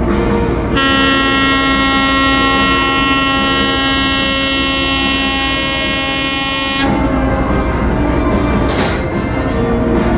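A ship's horn on the ferry gives one long, steady blast of about six seconds, starting about a second in and cutting off sharply, over a steady low rumble.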